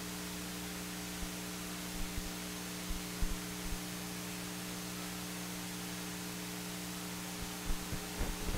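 Steady electrical mains hum with hiss, from the hall's sound system or the recording chain. A few faint low thumps come through it a couple of seconds in.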